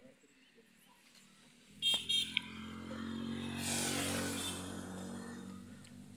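A passing motor vehicle: two or three short, high horn beeps about two seconds in, then its engine noise swells to a peak about two seconds later and fades away.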